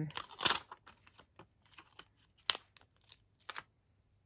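Sheet of clear photopolymer stamps handled and a stamp pulled off its plastic backing. A crinkling rustle in the first second, then scattered light clicks and ticks, with two sharper ones about a second apart near the end.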